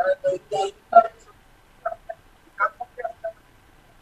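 Choppy, broken-up speech fragments over a remote broadcast link: short bursts of voice with gaps between them, too garbled to make out words.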